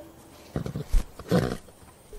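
A horse's vocal sounds: a rapid fluttering run about half a second in, then a louder short, low call a moment later.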